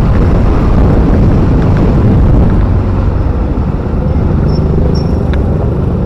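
A two-wheeler ridden along a road, its engine running under loud, rumbling wind noise on the microphone.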